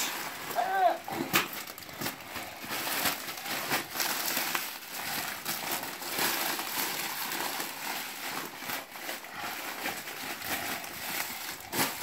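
Plastic bubble wrap and packaging crinkling and rustling in a continuous run of crackles as it is pulled and torn off a parcel by hand.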